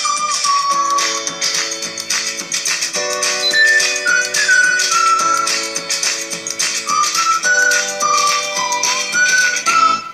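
Philips mini Bluetooth speaker playing music at full volume: a high lead melody over held chords and a steady beat of short percussive ticks, with no deep bass. The music cuts off suddenly at the end.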